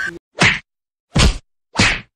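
Edited-in hitting sound effects: three short, sharp whacks about 0.6 s apart, with dead silence between them.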